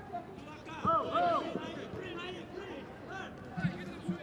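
Faint voices calling out across a football pitch over low stadium ambience, with a couple of drawn-out shouts about a second in.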